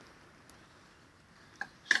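Quiet background, then two sharp knocks near the end, the second much louder: things being handled and set down on a wooden table.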